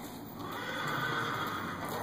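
A horse whinnying once, a single call of about a second and a half that starts about half a second in.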